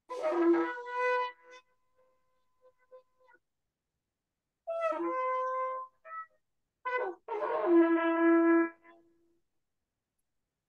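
A large spiralled shofar blown in several blasts: a first blast of about a second and a half, then after a pause a shorter blast, a brief one, and a long held blast of about two seconds near the end. Heard through a video call's audio, which cuts to silence between the blasts.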